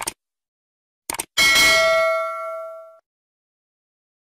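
Subscribe-button animation sound effect: a click, a quick double click about a second in, then a bright notification-bell ding that rings out and fades over about a second and a half.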